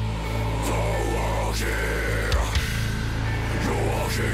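Heavy metalcore song playing, with distorted electric guitars over a steady low bass note.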